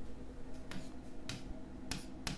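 Three short, sharp clicks about half a second apart: a pen tip tapping on the board while brackets are written.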